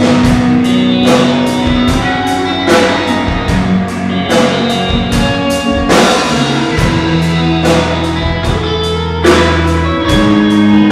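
Live rock band playing: drum kit, electric guitars and electric bass. There is a steady beat of drum and cymbal hits over held bass notes.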